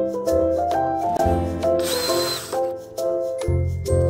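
Instrumental background music: a melody of short sustained notes over a low bass line, with a brief hiss about halfway through.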